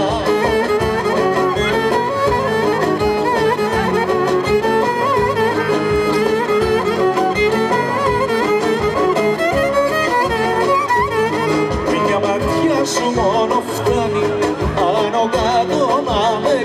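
Live Greek folk band playing an instrumental dance tune, a violin carrying an ornamented melody over a steady rhythmic accompaniment.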